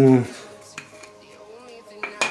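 A few light clicks and taps of camera gear being handled, as the lens is readied for mounting on the camera body.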